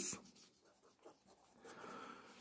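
Near silence, then faint felt-tip marker strokes on paper near the end.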